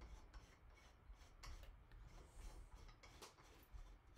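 Near silence with faint handling sounds: light rubbing and a few soft clicks.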